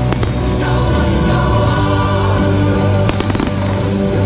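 Fireworks bursting over music with choir-like singing: a sharp bang right at the start and a cluster of cracks about three seconds in, under steady held musical tones.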